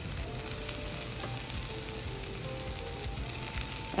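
Diced potatoes frying in oil in a nonstick pan: a steady, even sizzle.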